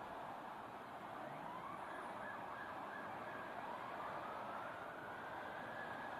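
Police car sirens wailing in slow rising-and-falling sweeps, fairly faint, over a steady hiss of traffic and wind.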